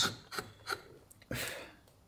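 A hand carving blade paring shavings from a small wooden pendant: a couple of short scraping cuts, then one longer cut about a second and a half in.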